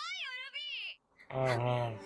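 Anime character dialogue: a high-pitched female voice with a wavering pitch exclaims a short excited line, then after a brief pause a lower, steady voice sounds from about a second and a half in.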